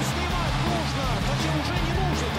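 Background music with a steady bass line, with faint voices underneath.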